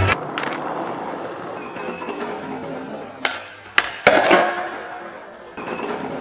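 Skateboard wheels rolling on asphalt, with sharp clacks of the board's tail and deck striking the ground about three to four seconds in: the pop and landing of a trick. The loudest clack is near four seconds and is followed by more rolling.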